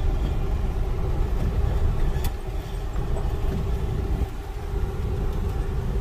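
Steady low rumble of a vehicle's engine and tyres, heard from inside the cab while it drives over a dirt lot. There is a faint click about two seconds in.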